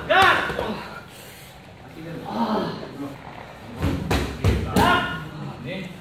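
Two thuds of gloved strikes landing on a trainer's pads, about half a second apart, a little past the middle, between shouted coaching commands.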